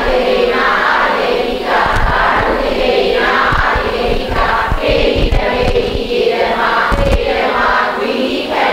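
Several voices reciting a Buddhist text together in unison, in a steady chanted rhythm of short phrases.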